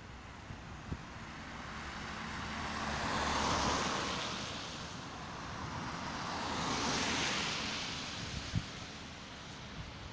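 Two cars passing one after the other on a wet road, their tyres hissing on the water. Each swells up and fades away, the first peaking about three and a half seconds in and the second about seven seconds in.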